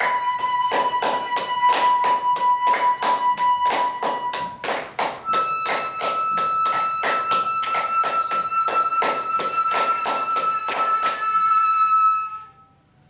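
Flute playing long held notes, the second a step higher and starting about five seconds in, over a fast, steady rhythm of light percussive taps.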